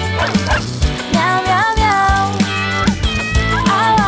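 A dog barking several times over upbeat children's song music with a steady beat.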